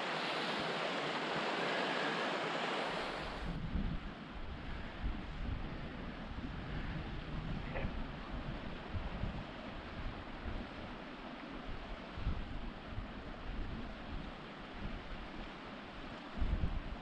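Steady rushing of a small moorland stream, the upper River Barle, for the first few seconds. It changes suddenly to gusty wind buffeting the microphone, with uneven low rumbles, for the rest.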